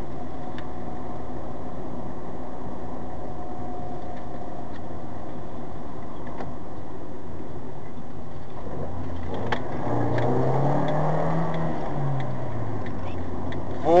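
Steady road and engine noise inside a moving car. About ten seconds in, an engine note rises and then falls again as the car accelerates and eases off.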